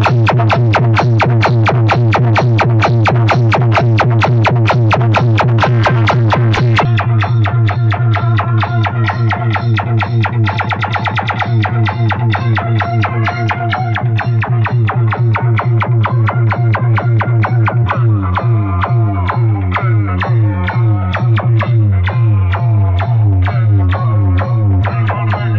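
Loud electronic dance music played through a large stack of horn loudspeakers of a DJ sound system, with a strong, fast-pulsing bass beat. The sound turns duller about seven seconds in, and the beat changes about eighteen seconds in.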